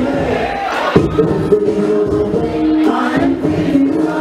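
Dance music with vocals playing over a sound system, with crowd voices mixed in and a sharp hit about a second in.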